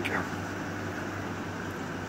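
Steady low hum with an even hiss underneath, unchanging throughout.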